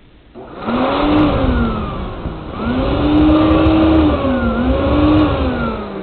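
Vacuum cleaner run in blow mode, inflating a homemade fabric airbag: a motor whine that wavers up and down in pitch over a rush of air, starting about half a second in, dipping briefly around two seconds and dying away near the end.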